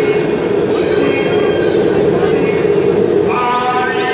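Steady din of a stadium crowd, with a voice coming faintly over the loudspeakers.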